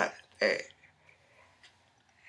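A woman's short, throaty vocal sound about half a second in, cut off quickly, then near quiet with a faint tick or two.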